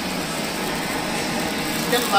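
Gas blowtorch flame burning with a steady, even hiss.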